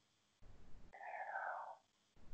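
A faint, breathy vocal sound lasting under a second in the middle, with no clear pitch, set in otherwise near silence.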